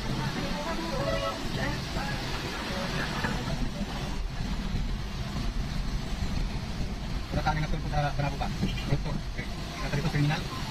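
Steady low engine and road rumble heard from inside a car's cabin as it drives slowly through town traffic, with voices mixed in.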